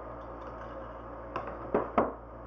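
Three short, sharp clicks in the last second from green-handled wire cutters and thin florist wire being handled on a wooden board, over a low steady hum.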